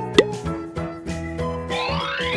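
A cartoon pop sound effect about a quarter of a second in, as a wooden mallet knocks a square block out of a mould, over children's background music. Near the end a rising, whistle-like glide begins.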